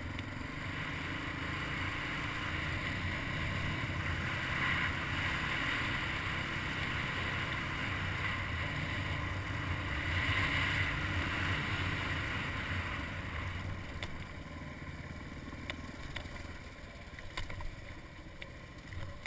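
Suzuki DR350 single-cylinder four-stroke engine running as the dirt bike climbs a hill, with wind noise on the microphone; it swells twice and is quieter in the last few seconds, where a few sharp clicks come through.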